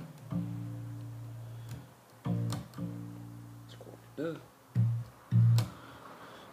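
Unaccompanied electric bass guitar playing the opening notes of a bassline, starting on B-flat at the sixth fret of the E string: two long held notes, then two short plucked notes near the end.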